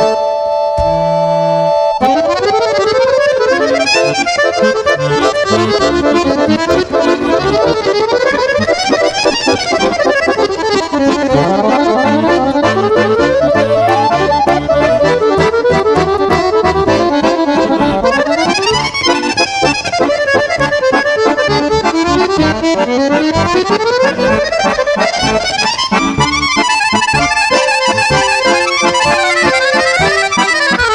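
Two piano accordions playing together live: held chords for the first couple of seconds, then fast runs of notes sweeping up and down the keyboard over a steady accompaniment.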